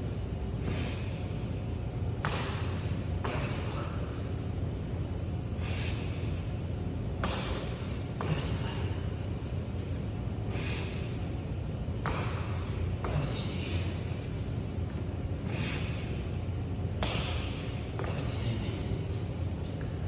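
Burpees on a concrete floor: short, hard breaths come about every one to two seconds, with the occasional sharp thud of hands or feet landing. A steady low hum runs underneath.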